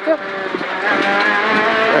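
Peugeot 208 R2 rally car's engine pulling hard, heard from inside the cabin, with its pitch and loudness climbing steadily as the revs rise along with road noise.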